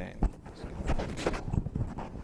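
Irregular thumps, knocks and rustling of a clip-on microphone being handled, the loudest thump about a quarter second in.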